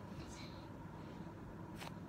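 Faint soft rustle of a foam squishy toy being squeezed close to the microphone, with one light click near the end.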